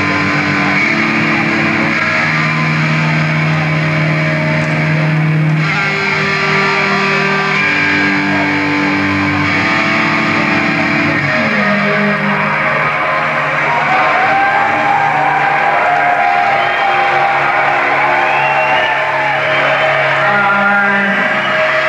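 A live rock band's electric guitars and bass ringing out in long, held chords that change every second or two. From about twelve seconds in, the held notes give way to wavering higher tones.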